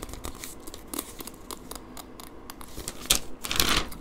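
Rustling and crinkling of a paper store circular being handled, with small ticks throughout and a louder rustle near the end.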